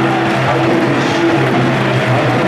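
Basketball arena crowd cheering: a loud, steady din with a few held tones running through it.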